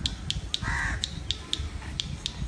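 A bird gives one short call a little over half a second in, over an even, rapid ticking of about four ticks a second.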